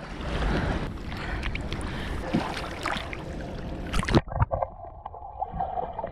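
Water splashing and sloshing around a person swimming. About four seconds in the sound cuts to a muffled, dull wash, as heard from under the water.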